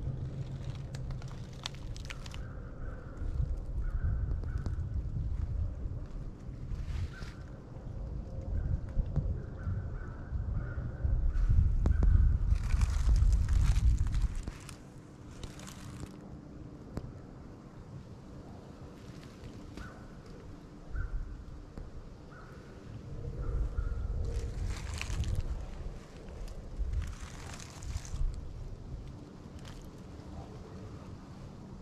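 Slow, careful footsteps crunching through dry leaf litter. Wind rumbles on the microphone in two stretches, the first about a third of the way in and the second past the middle.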